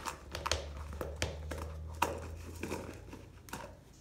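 Dry rice rustling and crunching as it is pressed into a fuzzy sock stretched over a plastic cup, with irregular sharp clicks of the grains and of rice dropping into a stainless steel mixing bowl.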